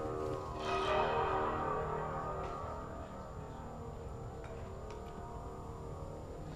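The Beam, a long amplified instrument strung with piano wire, is struck and left to ring. It makes a dense, droning metallic tone with many overtones, which swells again about a second in and then slowly fades.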